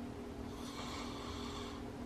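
A man snoring in his sleep: one long snoring breath from about half a second in until near the end, over a steady low hum.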